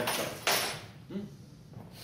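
A man's voice repeating a question from the audience, with a short loud burst of hiss about half a second in.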